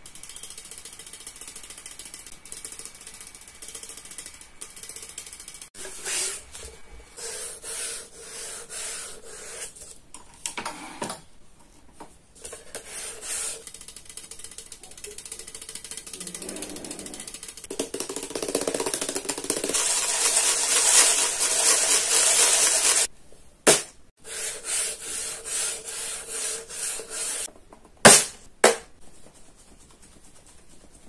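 Fingernails tapping and scratching on a slim aluminium drink can, in rapid runs of fine clicks. The clicking grows louder and denser for a few seconds about two-thirds of the way through, and a few sharp single taps come near the end.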